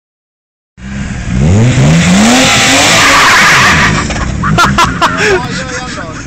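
BMW 325's straight-six engine revving hard, its pitch climbing, while the rear tyres spin and squeal against the tarmac in a burnout. It starts sharply about a second in, is loudest for the next three seconds, then the revs drop and excited voices shout over the idling engine.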